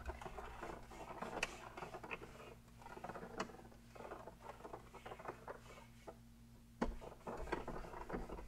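Microfibre towel wiping across a textured plastic dashboard: faint, irregular scratchy rubbing strokes, with a single knock near the end.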